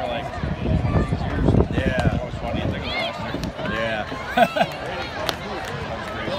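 Chatter of several spectators' voices close to the microphone, overlapping and unclear, with a low rumble on the microphone from about half a second to two seconds in and a few sharp clicks later.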